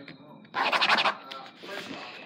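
Pen scribbling rapidly on a book's paper page, one fast burst of scratching strokes about half a second in that lasts about half a second.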